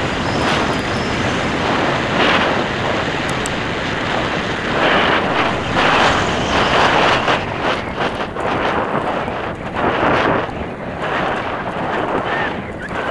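Wind rushing over the microphone of a mountain bike's onboard camera, mixed with the tyres rolling fast over dirt and gravel on a downhill forest trail. The rush is loudest about five to seven seconds in, while crossing a gravel road.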